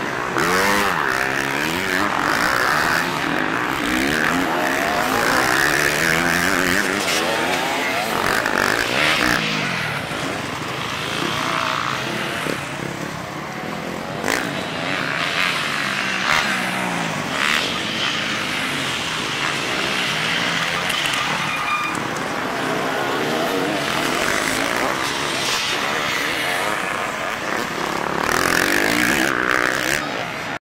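Enduro dirt bike engines, more than one, revving hard, their pitch repeatedly rising and falling as the bikes are ridden through the bends.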